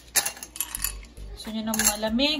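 Ice cubes dropped by hand into a glass tumbler, clinking against the glass and against each other: a few sharp clinks just after the start and another cluster near the end.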